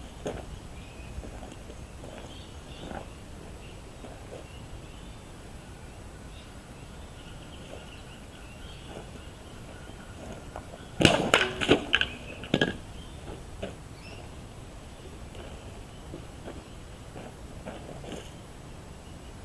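A quick cluster of sharp knocks or clatters, several in about a second and a half, about eleven seconds in, over a quiet steady background with faint chirping.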